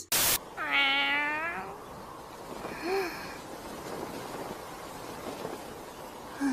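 A short burst of static noise, then a cat meowing: one long meow about half a second in and a shorter, fainter meow about three seconds in, over a low hiss.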